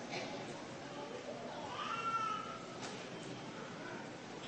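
A faint drawn-out call about two seconds in, its pitch rising and then falling, over a steady background hiss.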